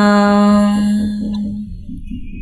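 A voice chanting a Vietnamese poem holds its last syllable on one steady note, which fades away about a second and a half in.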